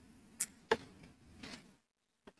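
Mostly quiet, with two faint short clicks about a third of a second apart near the start.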